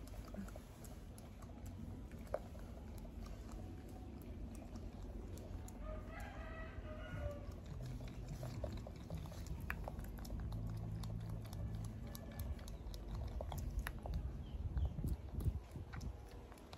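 Close-up rustling and small clicks of a macaque's fingers picking through a man's hair. A rooster crows once, about six seconds in. A low steady hum comes in over the second half.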